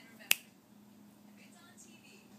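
A single sharp click about a third of a second in, dying away almost at once.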